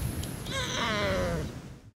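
A baby's high, wavering vocalization lasting about a second, starting about half a second in, over a low background rumble.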